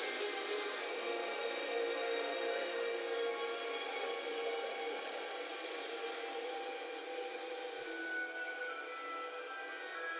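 Slow background music from a documentary soundtrack, several long held notes sounding together and shifting slowly, heard through a video call's narrow, thin-sounding audio.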